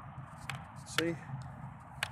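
Handling noise close to the phone's microphone: a few sharp clicks from the plastic quadcopter transmitter being handled right against the phone, over a quiet background hiss.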